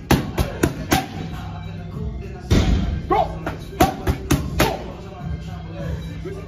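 Boxing gloves striking focus mitts in quick combinations: four fast smacks in the first second, then another run between two and a half and about five seconds in, the loudest at about two and a half seconds. Background music plays throughout.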